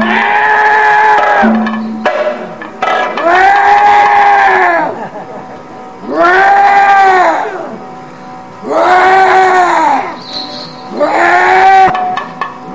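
Kathakali vocal music: a singer holds five long, arching notes in succession, each swelling and falling away over one to two seconds, with short breaks between them and a faint steady drone underneath.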